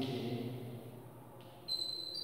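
A man's voice held in a drawn-out, sing-song tone for about the first second, fading out. Near the end a sudden high, steady squeak of chalk on a blackboard.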